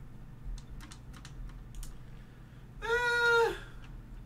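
A few light clicks in the first two seconds, then a man's drawn-out, hesitant "ehh" about three seconds in, held on one pitch and dropping at the end.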